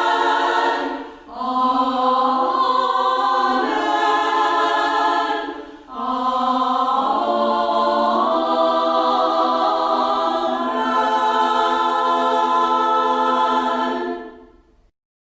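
A small church choir singing in long held chords, with two short breaks for breath about a second in and near six seconds.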